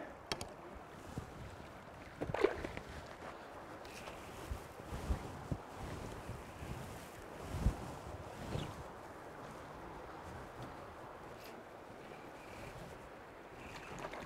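Faint, steady rush of a shallow, slow-moving trout stream, with a few short, soft sounds over it; the loudest comes about two and a half seconds in.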